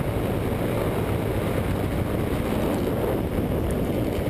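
Steady rush of wind buffeting the microphone, mixed with the drone of an open ultralight trike's engine in cruising flight.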